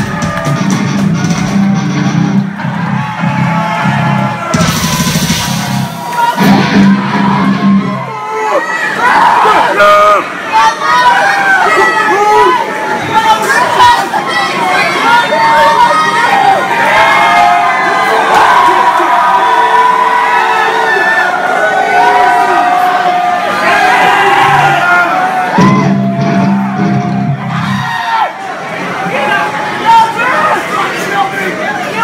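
Live metal band playing distorted guitar and bass chords for about eight seconds, then a crowd cheering and yelling for most of the rest, with a few more seconds of the band's chords near the end.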